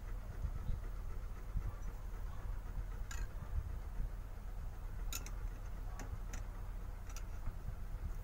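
A knife and a ceramic plate tapping against a metal pan while set jelly is cut and lifted out: about six short, light clicks in the second half, over a steady low rumble.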